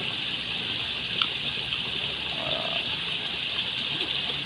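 Steady rushing of water pouring into the river from an outlet, a constant hiss, with a single small click about a second in.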